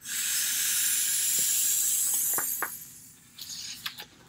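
A person blowing hard into the valve of a small inflatable plastic flamingo float, which is hard to blow up: one long rushing breath of about two and a half seconds that fades out, a few faint plastic clicks, then a shorter breath near the end.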